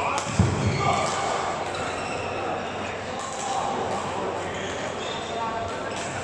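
Busy badminton hall: rackets hitting shuttlecocks and players' footwork thudding on the courts, with indistinct voices in a large echoing hall. The loudest sound is a thud about half a second in.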